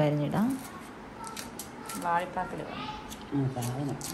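A small knife slicing a green chilli held in the hand, a few light, crisp cuts as the rings drop into the bowl. A voice speaks briefly in the middle and near the end.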